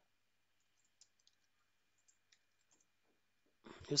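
A few faint, scattered clicks from a computer keyboard, with a faint steady high whine underneath.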